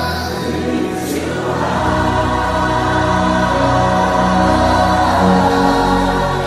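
Gospel worship music: a choir singing long held chords, with a deep low note coming in about two seconds in.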